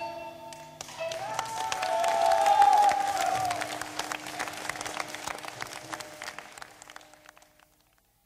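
Audience applause on a live recording as a song ends, with held electronic tones wavering over it. The applause swells for a couple of seconds, then fades out to silence just before the end.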